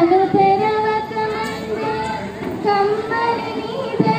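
A young woman singing solo into a microphone, a few long held notes with a short break between phrases.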